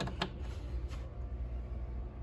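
Two quick faint clicks as a DC charging cable plug is pushed into a Bluetti B230 battery's input port, over a steady low hum.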